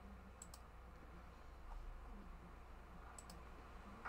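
Near silence: a low, steady room hum with two faint pairs of quick clicks, one pair about half a second in and another just after three seconds in.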